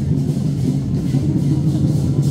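Loud drum-and-percussion music accompanying a dragon dance, running on without a break.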